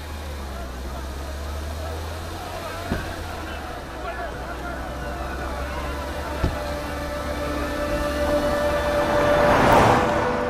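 Action-film soundtrack mix: a steady low rumble with two sharp hits, about three and six and a half seconds in, and a swell that builds to a peak near the end.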